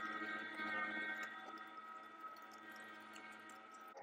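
LEM Big Bite #8 electric meat grinder running steadily, a constant motor hum and whine as it pushes chilled venison through the coarse grinding plate. It gets a little quieter toward the end.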